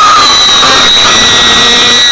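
A very loud, harsh, distorted noise effect: a steady dense rush with several high whining tones held over it.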